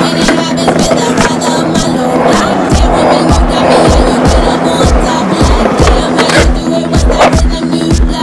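Skateboard wheels rolling on concrete under a music soundtrack. The music carries a steady bass-drum beat, about two beats a second, which comes in about three seconds in.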